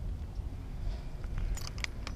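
Low wind rumble on the microphone, with a few light clicks about one and a half seconds in.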